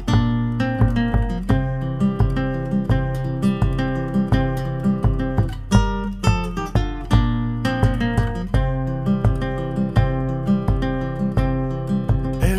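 Acoustic guitar strummed in a steady, even rhythm: an instrumental stretch of a Spanish-language song, with no singing.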